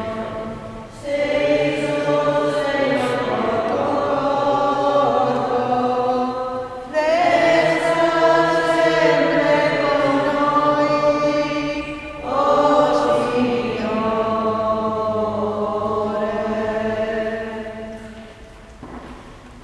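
A church choir singing a hymn in three long, held phrases, each starting afresh about a second in, at about seven seconds and at about twelve and a half seconds, fading near the end.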